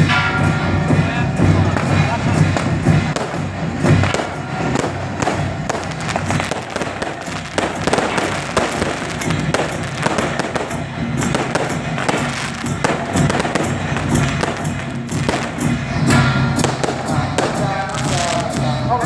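Strings of firecrackers going off in a rapid, dense crackle, thickest through the middle, over loud music with singing.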